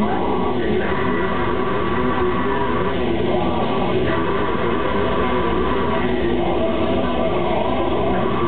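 Grindcore band playing live, loud and without a break: electric guitar, bass guitar and drums.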